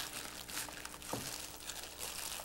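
Thin plastic food-prep gloves crinkling and rustling irregularly as hands press and roll a bamboo rolling mat around a seaweed roll.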